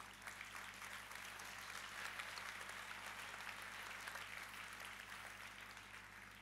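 Audience applauding: a dense patter of many hands clapping that builds over the first couple of seconds and then slowly dies away.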